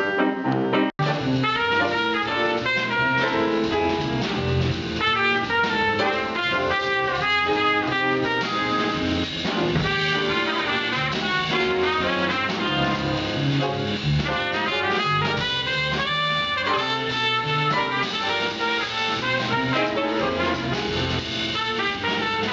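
Folk vocal singing cut off about a second in, then a small jazz combo of trumpet, a second brass horn and drum kit playing a lively tune.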